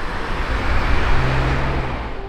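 Road traffic: a car going by, its tyre and engine noise swelling toward the middle, with a low engine hum in the second half.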